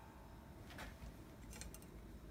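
Near silence: room tone, with a few faint ticks about a second in and near the end.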